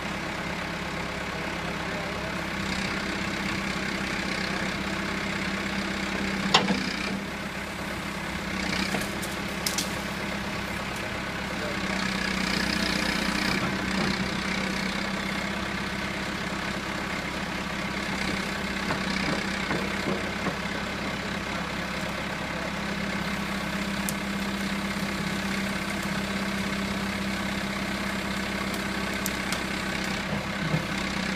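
Backhoe loader's diesel engine running steadily, with a few sharp clicks or knocks about six and a half and ten seconds in. The engine is briefly a little louder around twelve to fourteen seconds.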